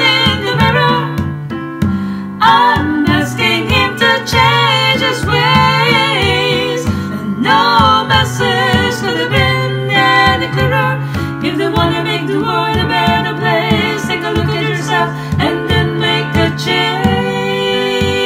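Layered vocal harmonies singing a pop ballad over piano, with a hand drum tapping out a steady beat. The voices thin out near the end while the piano and drum carry on.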